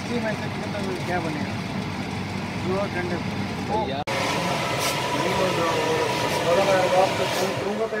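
Steady blower noise from a garment form finisher inflating its body dummy under a jacket, with voices over it. About four seconds in, the sound cuts abruptly to a louder steady machine hum with a faint steady tone.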